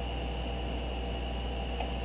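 Steady low hum and hiss with a thin, steady high-pitched whine.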